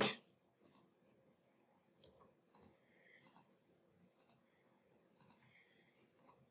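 Faint computer mouse clicks, about seven spaced irregularly, as the software is operated.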